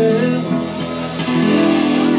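A live rock band playing loud: electric guitars strumming over bass and drums, with no singing in this stretch.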